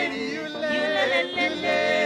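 Worship team singing a gospel song in harmony, the voices wavering in vibrato and sung runs, with keyboard accompaniment.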